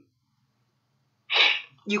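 After about a second of near silence, one short, sharp burst of breath noise from a person, like a stifled sneeze or a forceful exhale, lasting under half a second.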